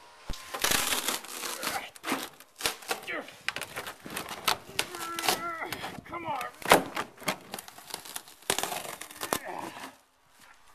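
Stiff moulded window eyebrows being ripped off a boat hull by hand: a long run of sharp cracks, snaps and crunching tears, with a man's effortful voice now and then.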